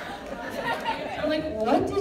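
Speech only: voices talking indistinctly over one another.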